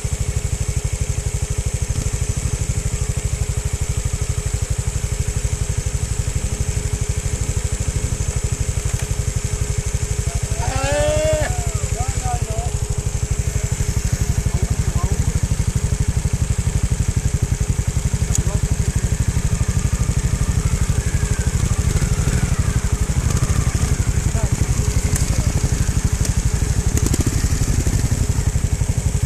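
Trials motorcycle engine running steadily at low revs close by, with its pulsing exhaust note. A short call from a person's voice cuts in about eleven seconds in.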